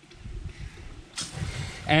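Black tank waste and water draining through an RV sewer hose and clear elbow: a low, uneven rushing, with a short hiss a little over a second in.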